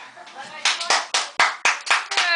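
A small child clapping her hands, about four claps a second, starting about half a second in.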